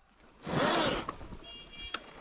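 A 72V Sur-Ron electric dirt bike on a wet woodland trail: a short rasping rush of noise about half a second in, then near the end a brief high-pitched squeal and a click.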